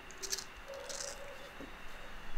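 Faint clicks and rustling as the cloth-covered wooden-frame grille of a JBL 4312 MkII speaker is pulled off the cabinet front.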